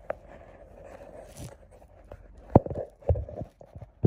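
A few sharp knocks and clicks over a faint rustle, the loudest about two and a half seconds in, with smaller ones following close together near the end.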